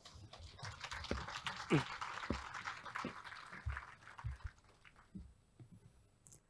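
Faint audience applause that starts about half a second in and dies away after about four seconds, with a few low knocks mixed in.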